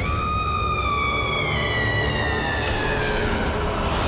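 Dramatic background-score sound effect: a long high tone that starts suddenly and slides slowly downward, fading after about three seconds, over a low rumbling drone.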